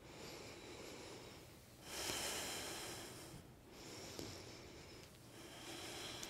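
A woman breathing slowly in and out, mostly through the nose, in long even breaths, the loudest about two seconds in.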